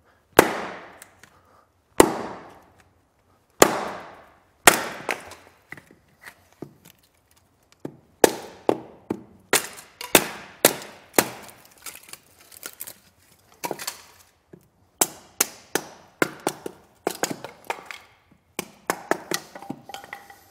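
A small hand-forged axe chopping and splitting kindling off a hard piece of wood on a splitting stump. First come four heavy strikes about a second and a half apart, each with a ringing decay, then a run of quicker, lighter chops that grows faster near the end.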